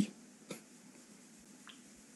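A single short click about half a second in, with a fainter tick later, over quiet room tone.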